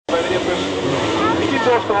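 Engines of a pack of sidecarcross outfits running hard as the field accelerates off the start, with a man's voice talking over them.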